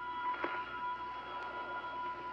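Eerie film underscore of sustained high held tones, with a brief swell about half a second in.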